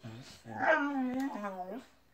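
Bull terrier puppy "talking": a short low grumble, then a drawn-out, wavering vocal sound lasting over a second that drops in pitch at the end.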